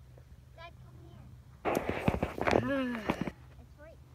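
Cucumber vines and their large leaves rustling and crackling as a big cucumber is cut and pulled free, a loud burst of about a second and a half starting partway through.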